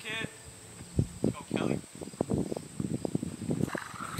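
Outdoor ambience of scattered faint voices calling out, over a steady high-pitched insect chirring.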